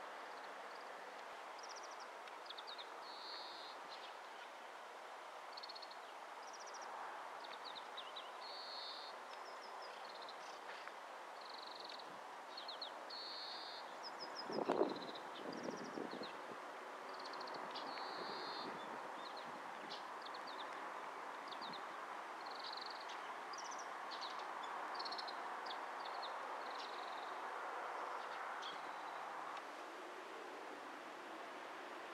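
Small birds singing in short repeated chirping phrases over a steady outdoor wind hiss. About halfway through there is a brief low thump, the loudest sound here.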